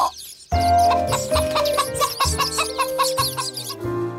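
A cartoon hen clucking in a quick run of short clucks over background music.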